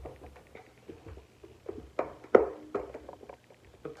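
Handling noise from a plastic ammo can and a power cord being fed through a hole in its back: light irregular taps and clicks, with two louder knocks about two seconds in.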